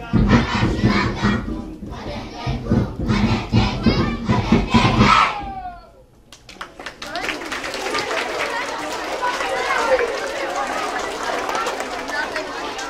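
Children's choir singing a rhythmic song over a steady beat, ending with a shouted final note that falls away about five seconds in. The audience then applauds and cheers.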